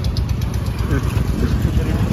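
A motor engine idling nearby with a steady low throb.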